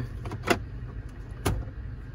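Plastic glovebox latch on a pickup's dashboard clicking as it is pulled and the glovebox lid comes open: two sharp clicks about a second apart, over a steady low hum.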